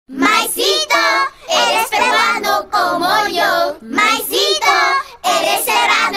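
A child singing in short phrases, with hardly any instruments under the voice.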